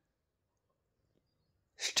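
Near silence, then near the end a quick, sharp intake of breath by a man just before he starts speaking again.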